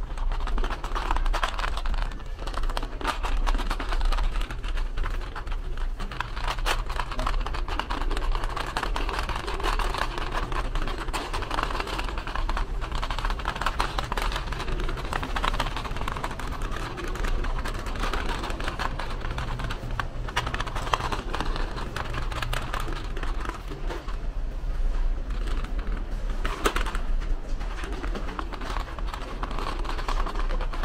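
Supermarket aisle ambience: a continuous rattle of small clicks, like a shopping trolley rolling over a tiled floor, over a steady low hum.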